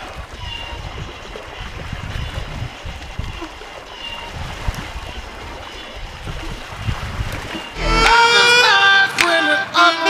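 Wind buffeting the microphone and water splashing along the hull of a small wooden outrigger sailing canoe under way. About eight seconds in, a loud song with singing comes in over it.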